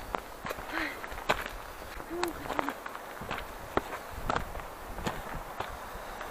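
Footsteps on loose stones and gravel while climbing a steep rocky path: an uneven step every half second to a second.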